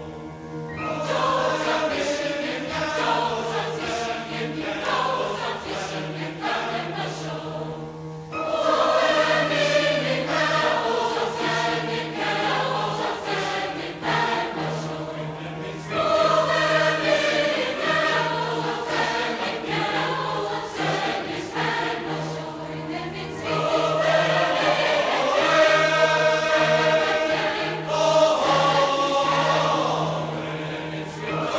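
A choir singing in phrases of several seconds each, with new phrases entering about every eight seconds. A steady low hum runs underneath.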